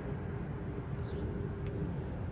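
Outdoor city street background: a steady low rumble like distant traffic, with no distinct events.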